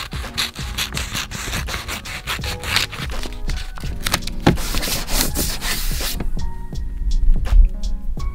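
Scissors cutting through a sheet of paper and the paper being handled: a rasping, rubbing noise that stops abruptly about six seconds in, over background music.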